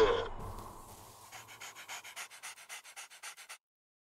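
The mashup's music dies away in the first second. It is followed by quick, rhythmic panting, several short breaths a second, that cuts off abruptly shortly before the end.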